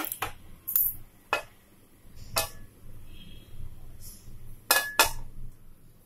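Cookware clinking and knocking: about seven sharp clinks at irregular intervals, two of them close together near the end, over a low steady hum.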